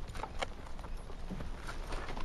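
Horses' hooves clopping on the ground, a few irregular knocks.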